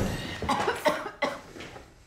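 A person coughing several times in short, separate bursts.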